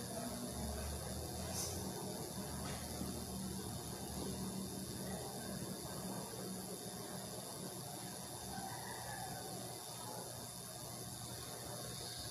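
Faint, steady room tone: an even hiss with a low hum underneath, and no bell, voice or other distinct sound.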